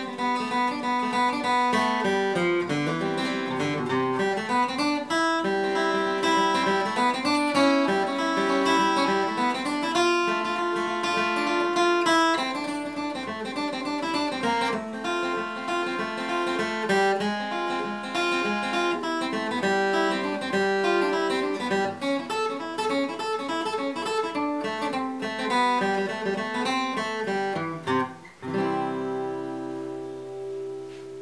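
Solo steel-string acoustic guitar flatpicking a bluegrass instrumental, a little slower than full speed, the melody woven into banjo-style forward rolls picked with alternating down-up strokes. It ends on a final chord left ringing for the last second or two.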